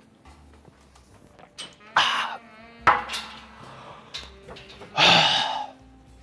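A man gasps and exhales hard three times, with a short strained, wavering groan before the second breath, reacting to the burn of a shot of liquor he has just downed.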